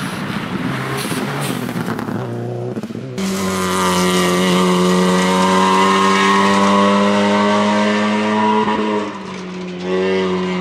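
Rally car engines at full power on a gravel stage: a car revving through a bend, then, after a sudden cut about three seconds in, a second rally car's engine holding a loud, steady high-revving note that falls away near the end.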